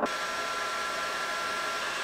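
Bauer heat gun running steadily: an even rush of blown air with a thin steady whine.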